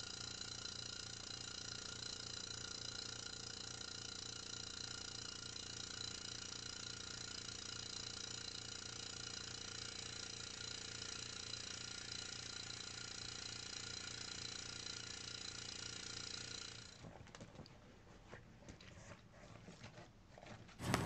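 A steady machine hum made of many even tones, which drops away about three seconds before the end to faint, scattered handling clicks.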